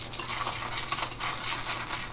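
RazoRock Plissoft synthetic shaving brush whipping shaving cream in a bowl, a steady run of quick brush strokes as the cream starts to build into lather.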